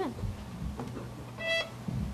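A single short, high violin note, about a quarter second long, sounds about one and a half seconds in as the bow is set on the strings before the tune starts; a soft knock of the instrument being handled follows near the end.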